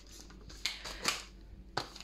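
Plastic food packs being handled and moved: faint crinkling with a few light clicks of the rigid plastic trays.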